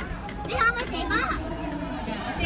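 Children's voices and untranscribed speech, over the background noise of a busy hall.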